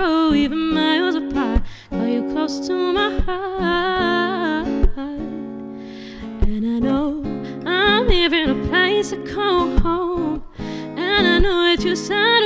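A solo singer performing live, singing a slow melody while accompanying herself on a capoed acoustic guitar. The music softens briefly around the middle before the voice comes back in fully.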